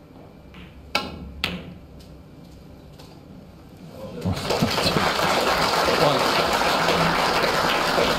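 Two sharp clicks of snooker balls about half a second apart as a shot is played, then an audience breaking into applause about four seconds in as the red is potted, the clapping holding steady to the end.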